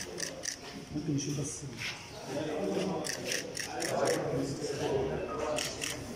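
Indistinct talking in a hall, with scattered sharp clicks, several in quick succession a few seconds in and again near the end.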